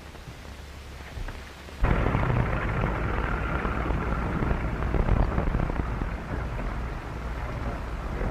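A fire crackling and rustling, starting abruptly about two seconds in, over the old soundtrack's steady hum and hiss.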